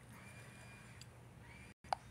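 Near silence: faint room tone with a low hum, broken near the end by a brief total dropout and a single sharp click.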